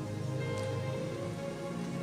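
Soft background music holding steady sustained notes, over a faint even hiss.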